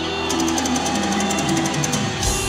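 Live heavy metal: an electric guitar plays a line stepping down in pitch over a fast, even high ticking of roughly eight to ten strokes a second, with the deep bass and drums held back.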